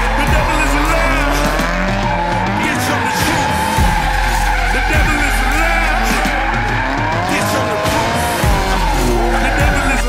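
Turbocharged Nissan S13 'Sil80' drift car sliding through a corner, its engine revving up and down over and over, with tyres squealing.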